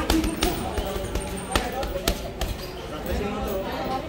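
Boxing gloves punching a heavy bag: repeated thuds of punches landing, some in quick succession, with voices talking in the background.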